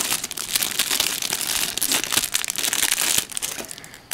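Thin plastic packaging and clear cellophane bags crinkling as hands pull them open and handle them. A dense, irregular crinkle fades out just before the end.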